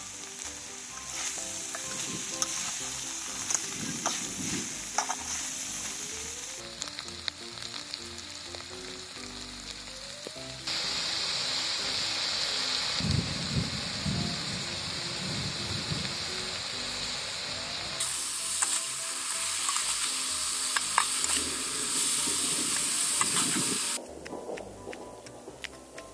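Fish, preserved soybeans and ginger sizzling in hot oil in a metal pan, with a utensil scraping and stirring in the pan at times and scattered pops. The sizzle's level jumps abruptly a few times, and faint background music with a melody runs underneath.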